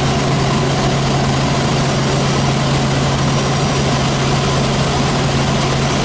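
Robinson R44 helicopter in steady cruising flight, heard from inside the cabin: its six-cylinder Lycoming piston engine and rotor make an even, unchanging drone with a strong low hum under a wash of noise.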